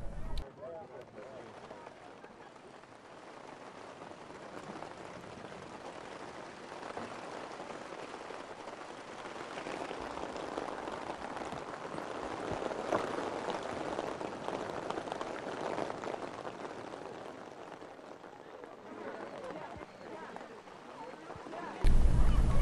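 Heavy rain falling, an even hiss that grows louder a few seconds in, is heaviest in the middle and eases toward the end.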